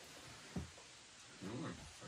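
Quiet room with a single soft low knock, then a short, quiet pitched vocal sound from a person near the end.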